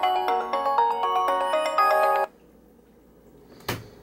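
Windows Phone alarm ringing: a bright, melodic chime of quick marimba-like notes that cuts off suddenly about two seconds in, as the alarm is silenced. After it the room is quiet, with one brief rustle near the end.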